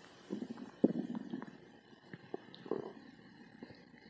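Stomach and intestines gurgling in a belly bloated after Mentos: bubbly gurgles in a few clusters, the loudest about a second in and another near three seconds.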